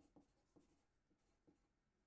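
Faint scratching of a pencil writing on paper, in a few short strokes.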